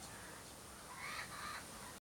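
Young laughing kookaburras calling: two short, harsh squawks in quick succession about a second in, an attempt at the adult laugh.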